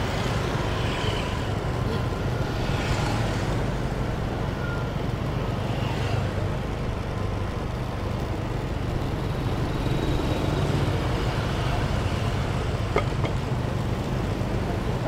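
Steady road noise of motor scooter traffic, with the continuous low hum of small scooter engines running along the road.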